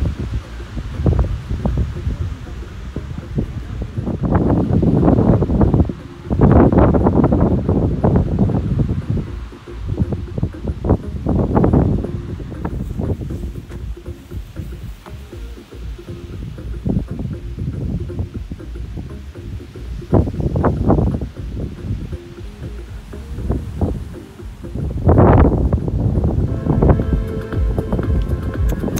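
Background music under irregular gusts of wind rumbling on the microphone.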